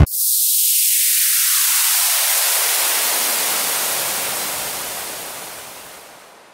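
A white-noise sweep in the outro of an electronic track. The music cuts off and a bright, high hiss takes over, filling in lower and lower over the next few seconds while it fades away.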